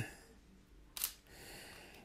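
A single sharp click about a second in, in near quiet, followed by a faint steady hiss.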